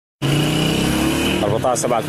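A steady engine hum with a low rumble that cuts in suddenly just after the start, followed near the end by a voice beginning to speak.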